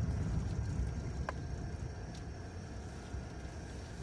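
Car cabin noise while driving: a steady low rumble of engine and road, slowly getting quieter, with one faint click about a second in.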